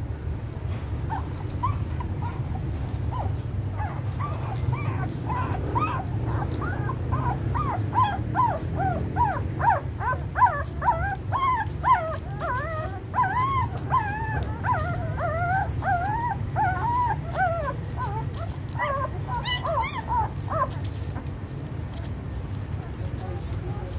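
Newborn puppies whimpering and squeaking as they suckle from their mother: many short, high, wavering squeaks, a few at first, coming thick and fast through the middle and thinning out near the end, over a steady low rumble.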